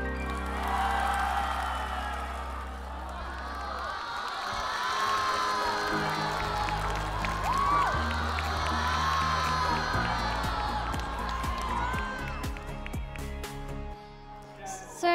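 Studio audience cheering and clapping, with scattered whoops and shouts, over soft sustained instrumental music with low held chords.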